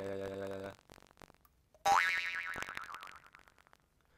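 A held vocal tone for the first second or so. Then a jaw harp is plucked once, about two seconds in: a bright twang whose overtone rises as the tongue moves forward in the mouth, dying away over about a second and a half.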